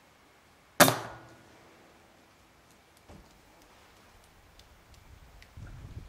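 A single air rifle shot about a second in: one sharp report that dies away within about half a second.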